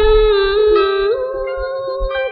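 A female voice sings a long held note in tân cổ (Vietnamese cải lương-style) song, stretching one syllable. It steps up in pitch about a second in and holds there. This is a pre-1975 studio recording.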